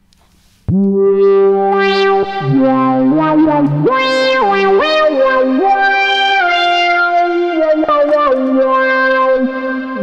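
Softube Model 82 software monosynth, a model of the Roland SH-101, playing a buzzy sawtooth lead melody through delay and shimmer reverb. It starts about a second in, holding one note at a time and stepping and sliding between pitches, with echoes trailing behind.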